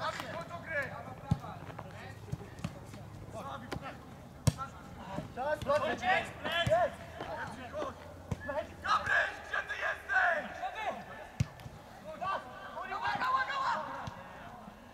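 Footballers calling and shouting to each other across the pitch in bursts, loudest around the middle and near the end. A few sharp thuds of the ball being kicked are scattered through it, the clearest about four seconds in.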